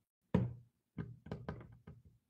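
A quick, irregular run of about six knocks close to the microphone. The first is the loudest and comes about a third of a second in; the rest follow in a tighter cluster in the second half.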